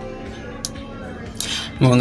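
One sharp click in low background noise, then a breath and a man starting to speak near the end.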